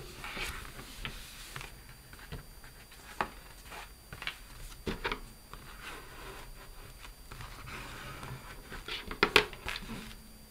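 Cardstock being pressed flat by hand and creased along its spine fold with a bone folder: soft paper rubbing with scattered taps and rustles, and a quick run of sharper taps about nine seconds in.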